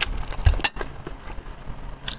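Close-miked eating sounds: chewing and wet mouth smacks on roast chicken, with several sharp clicks in the first half second or so, then quieter.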